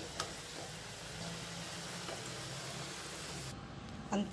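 Hot oil sizzling steadily around medu vadas (urad dal fritters) deep-frying in a pan, stopping shortly before the end.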